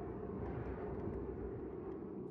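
Steady, low rumbling ambient noise with no distinct events.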